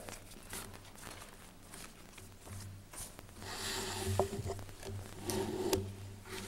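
Rustling and rubbing of a thick paper site plan being handled and put up on a board, with scattered light taps and clicks and two louder stretches of rustling in the second half, over a steady low electrical hum.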